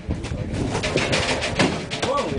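Stacked plastic bread trays knocking, rattling and scraping as they are shifted on wheeled dollies, with a low rumble underneath, in the hollow space of a truck trailer.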